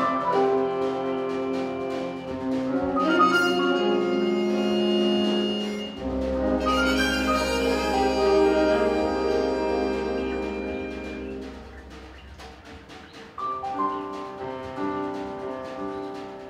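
School jazz big band playing: saxophones, trumpets and trombones in sustained chords over piano, bass and drums. The horns swell to two loud chords in the first half over a held low bass note, then drop back about three-quarters of the way through before the chords come back in.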